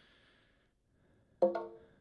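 UE Boom 2 Bluetooth speaker's connection chime, one pitched tone that starts suddenly about a second and a half in and fades. It signals that the speaker has just paired.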